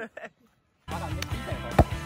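Background music with a steady low beat begins about a second in, after a moment of silence. Near the end a basketball bounces once on the dirt court with a sharp thud.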